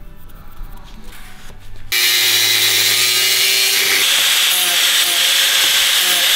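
Electric angle grinder starting about two seconds in and grinding the end of a square steel tube with a sanding disc: a loud, steady grinding that throws sparks.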